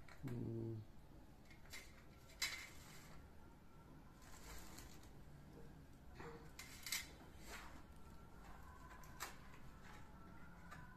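Faint clinks and taps of small puja items being set down and moved on a steel thali, with a few sharp clicks spread through and soft rustling in between. A brief low hum sounds right at the start.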